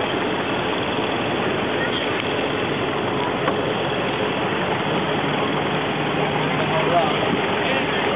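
Thai longtail boat's engine running steadily; a low, even hum comes up about halfway through.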